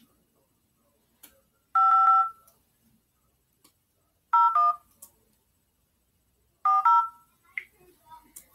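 Touch-tone phone keypad tones as a number is dialed. One held tone comes about two seconds in, then two quick tones in a row around four and a half seconds, then two more near the end, with faint taps between.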